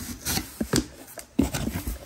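Cardboard box and high-density styrofoam packing being handled: scattered rubbing and a few soft knocks.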